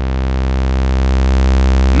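ASM Hydrasynth Explorer synthesizer holding one low, buzzy note through Filter 1 with drive. The note grows steadily louder and slightly brighter as the filter is adjusted.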